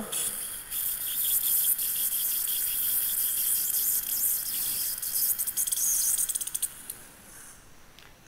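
Surgical implant drill running through the guide sleeve with saline irrigation, with a suction tip drawing off the spray: a steady high hiss that turns to crackling slurps near the end and stops about seven seconds in. This is the final drill of the osteotomy sequence.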